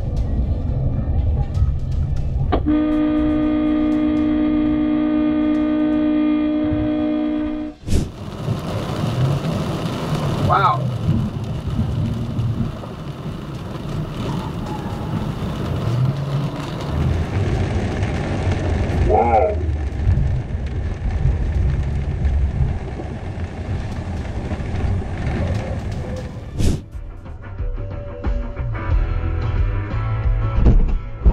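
A vehicle horn held in one long blast of about five seconds, starting a few seconds in, over dashcam road noise and background music. The sound changes abruptly twice where the footage switches.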